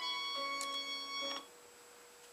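Classical music from BBC Radio 3 played through an FM tuner, held notes changing chord about half a second in. The music cuts off abruptly about one and a half seconds in as the tuner mutes while auto-scanning to the next frequency.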